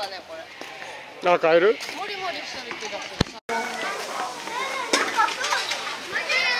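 People talking, with one voice loud about a second in. A sharp click and a short dropout near the middle, then more voices chattering.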